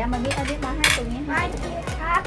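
Ceramic plates and spoons clinking and scraping on a table, with one louder clink about a second in.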